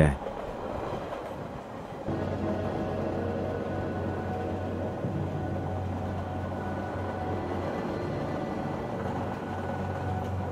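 Steady rumble of a train carriage in motion, used as a sound effect, under a sustained background-music drone. It gets a little louder about two seconds in.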